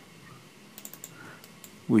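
Computer keyboard typing: a short run of quick, light key clicks about a second in, with one more click shortly after.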